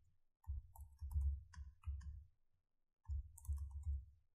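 Computer keyboard typing: a run of quick keystrokes for about two seconds, a short pause, then a second run near the end.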